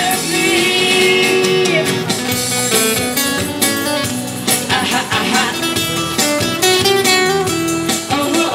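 Live amplified busker band playing an upbeat song with guitar to the fore, a woman singing into a handheld microphone over it.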